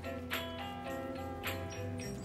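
Background music: held chords over a bass line, with a light ticking beat about twice a second.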